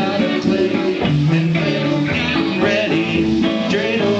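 Live instrumental music on stage: a run of sustained chords and melody notes, with no one talking over it.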